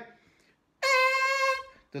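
A single short trumpet note, held at one steady pitch and bright, lasting under a second about midway through.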